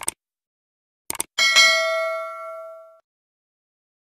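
Subscribe-button animation sound effects: a short mouse click, two more quick clicks about a second in, then a notification bell ding that rings out and fades over about a second and a half.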